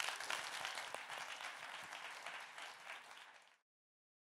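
Audience applauding, a dense patter of many hands clapping that fades and stops about three and a half seconds in.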